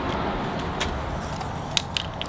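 Steady low outdoor rumble, with a few light clicks, two of them close together near the end, from a tape measure handled against the metal roof-rack crossbar.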